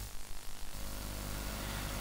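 Faint hiss with a steady low hum: the noise floor of an old analogue videotape recording, left in a gap after the intro music ends.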